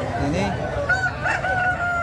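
Rooster crowing: one long, drawn-out call that starts about a second in and holds, falling slightly in pitch, over crowd chatter.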